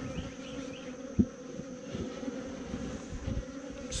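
Honeybees buzzing over the open frames of a hive, a steady hum, with a single sharp knock about a second in.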